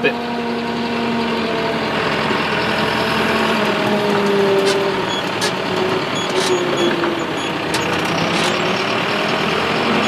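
John Deere 6330 tractor engine running as the tractor drives across a hay field, heard from inside the cab as a steady drone, its note drifting slightly up and down.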